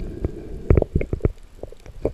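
Underwater handling of a speared spotted knifejaw as a knife is worked into its head: a string of sharp knocks and clicks, several close together in the first second and a half, over a dull underwater rumble.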